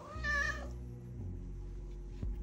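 A domestic cat meows once near the start while being stroked: a single short call, about half a second long, rising slightly and then falling.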